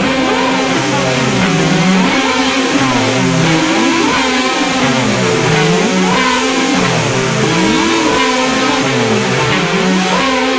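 Electric guitar, a Jazzmaster in alternate tuning, playing over a band recording, with notes sliding up and down in pitch about once a second.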